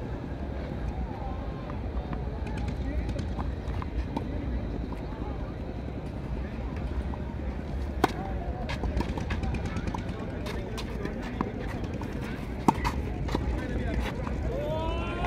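Tennis racket striking the ball on an outdoor clay court: a single sharp hit as the serve is struck about eight seconds in, small ticks during the rally, and another sharp hit near the end, over steady outdoor background noise.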